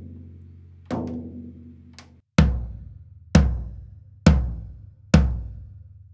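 16-inch floor tom struck with a drumstick during tuning. A light tap near a tension rod rings out with a clear sustained pitch, then four full strokes about a second apart, each with a deep boom that dies away.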